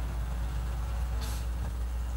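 A pause in amplified preaching: a steady low hum from the hall's sound system, with a brief soft hiss a little over a second in.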